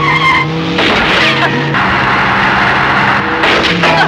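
Car skidding: a loud screeching noise lasting about a second and a half in the middle, over background film music with held notes.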